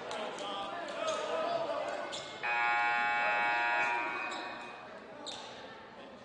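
Gym scoreboard buzzer sounding once, a steady horn that starts suddenly a little over two seconds in, holds for about a second and a half, then fades as it rings on in the hall. Before it, a few ball bounces and crowd chatter.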